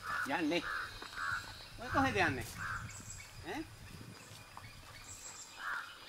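Short bird calls recurring about once a second, with brief snatches of a person's voice in between.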